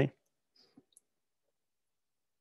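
Near silence in a pause of speech, broken by a couple of faint small clicks, about half a second and one second in.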